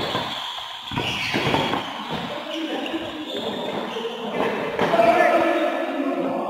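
Badminton rackets striking the shuttlecock in a doubles rally, with sharp hits near the start and about a second in. Players' voices call out, loudest near the end as the point finishes.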